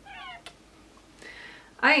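A single short, high-pitched vocal squeak that wavers in pitch, at the very start; a word of speech begins near the end.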